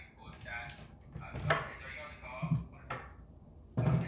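A few sharp knocks and taps of things being handled in a kitchen, over faint talk. The loudest knock comes about a second and a half in, and there is a heavier thump near the end.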